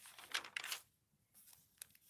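Glossy magazine page being turned, the paper rustling and crinkling for about the first second, then a short pause and a few faint ticks near the end.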